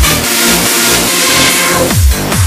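Hands-up electronic dance track in a short break: the kick drum drops out while held synth chords and a hissing noise sweep carry on, and the kick comes back in at the very end.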